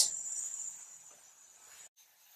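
A steady, faint, high-pitched tone in a pause between words, cutting off abruptly near the end.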